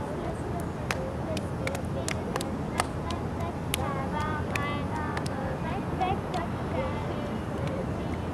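Outdoor playground ambience: a steady background hum with children's voices and short chirps, broken by scattered sharp clicks or claps.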